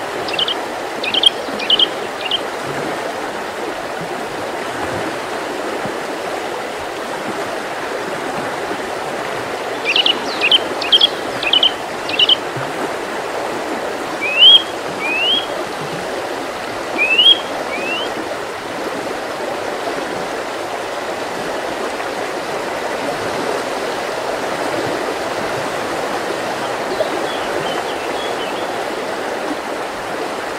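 Steady rush of flowing stream water, with small-bird calls on top: a quick run of short high notes at the start and again about ten seconds in, then a few single notes a few seconds later.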